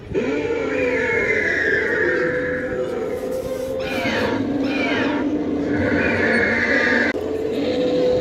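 Recorded prehistoric-animal screeches and growls played through an animatronic pterodactyl's speaker, a continuous call with a steady low tone under higher cries that bend in pitch. It cuts off abruptly about seven seconds in, and a similar recorded roar from the next animatronic dinosaur starts.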